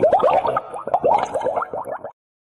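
Cartoon bubble sound effect: a rapid, continuous stream of short rising plops and boings, several a second.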